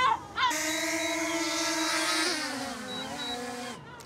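A small quadcopter drone's propellers whining close by as it comes in to land. The steady hum drops in pitch a little past two seconds in and cuts off just before the end as the motors stop.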